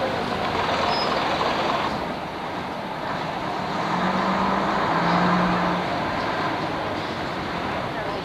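Coach engines running in a bus station, a steady loud noise, with two short low hums about four and five seconds in.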